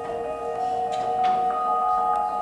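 Music of ringing, bell-like held tones, with a few sharp struck notes about a second in.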